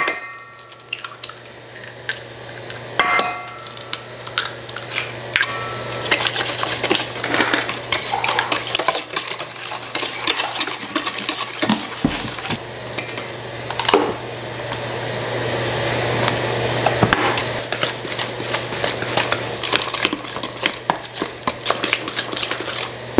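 Eggs knocked against a stainless steel mixing bowl a few times, each knock leaving a short metallic ring. Then a Danish dough whisk stirs batter in the bowl, a continuous scraping and clinking of wire on metal that gets louder as the mixing goes on. A steady low hum sits underneath.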